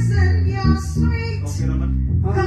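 A woman singing a slow jazz ballad into a microphone, with a Kala U-Bass, a ukulele-sized bass with rubbery strings, playing low notes under her voice.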